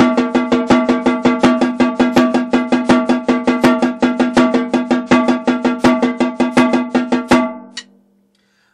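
Snare drum played with sticks in an even, unbroken stream of sixteenth notes, about six strokes a second, the sticking changing between single strokes, double strokes and paradiddles while the strokes are kept sounding the same. A steady drum ring runs under the strokes. The run stops near the end with one last stroke that rings out.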